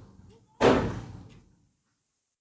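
A single sudden thump about half a second in, dying away over about a second; then the sound drops out to dead silence.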